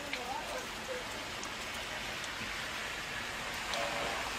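Steady rain falling, an even hiss, with a few faint light taps.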